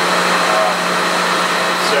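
Steady mechanical noise with a constant low hum from running gas-fired boiler-room equipment.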